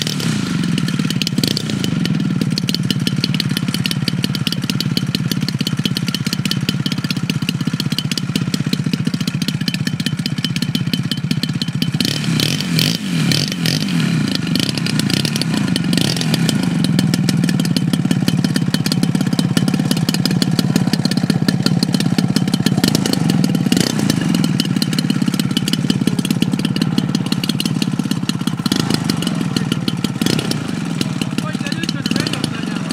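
Desert Aircraft DA150 twin-cylinder two-stroke gasoline engine of a large-scale Gee Bee R2 model plane running steadily, with an uneven, fluctuating stretch around the middle and slightly louder toward the end.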